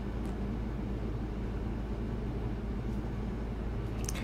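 Steady low hum and hiss of background room noise, with no distinct sound event.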